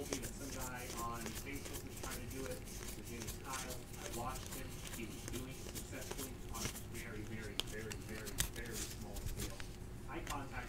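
Stack of 2018 Score football trading cards being flipped through by hand: soft repeated clicks and slides of card against card, with one sharper snap near the end. Faint voices run low underneath.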